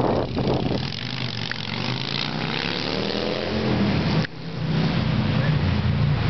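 A motor vehicle's engine running as it drives past, with a sweep in pitch as it goes by. The sound breaks off abruptly about four seconds in, then the engine hum picks up again.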